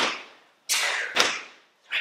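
Repeated ballet squat jumps on a hard studio floor: a sharp landing thud about every 1.2 s, with one near the start and another about a second in. Each thud comes at the end of a half-second rush of noise, and the next rush begins near the end.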